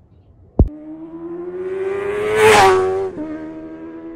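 A sharp click, then a motor vehicle engine at high revs approaching and passing by: it grows louder with a slowly rising pitch, is loudest about two and a half seconds in, and drops in pitch suddenly as it passes.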